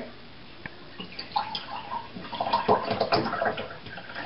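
Water poured from a plastic water bottle into a drinking glass, splashing into the glass from about a second in until near the end.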